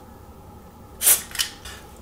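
A short burst of contact-cleaner spray from an aerosol can about a second in, followed by a brief second puff, sprayed onto the oxidised contacts of a hair dryer's bimetal thermal cut-out to free them.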